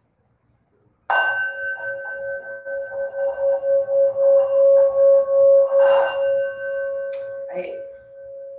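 Singing bowl struck once about a second in and left ringing with a steady pitched hum and higher overtones. The ring swells and pulses in loudness over the next few seconds, then fades near the end.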